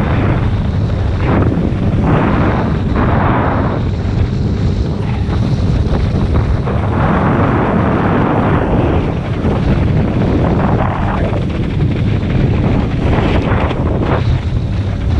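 Wind blasting a GoPro's microphone while water skiing at tow speed, over the rushing hiss of the ski cutting through the wake. The spray hiss surges and fades every second or two.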